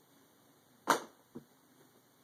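Two knocks: a sharp, loud one about a second in, then a fainter, duller one half a second later.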